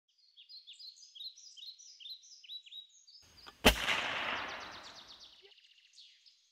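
Birds chirping in a quick series of short, falling notes, then a single sharp gunshot a little over halfway through, its echo fading over about a second and a half while the chirping goes on.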